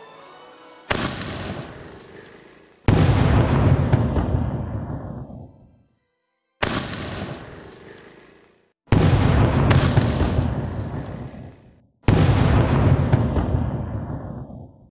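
Aerial firework shells from a three-tube 'Top Triplet' cake launching and bursting: five sudden loud bangs, each followed by a rumbling decay of two to three seconds, some cut off abruptly.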